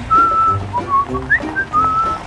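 A person whistling a short tune: single clear notes, some held and some with quick upward slides, over light background music.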